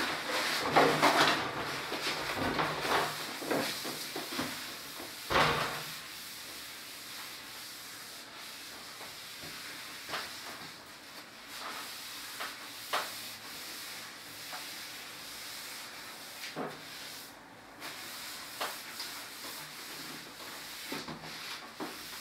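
A cloth rubbing across a chalkboard, wiping off chalk, in repeated strokes that are busiest in the first six seconds and then softer, with a few sharp taps against the board.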